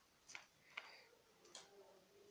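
Three faint, sharp clicks spaced about half a second apart or more, from hands working paper-craft materials.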